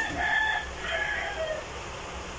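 A rooster crowing once, in two parts, the second part ending on a falling note.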